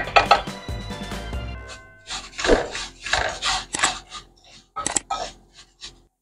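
Wooden spoon scraping and stirring raw rice grains around a metal frying pan as the rice toasts in oil, in short rasping strokes about two or three a second. Background music plays under the first second or so, then the stirring is heard on its own.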